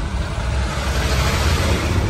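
Passing road traffic: a broad rushing noise that swells about a second and a half in and then fades, over a steady low rumble.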